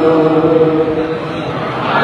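Unaccompanied male chanting of a naat (Urdu devotional poem), one long note held through a microphone.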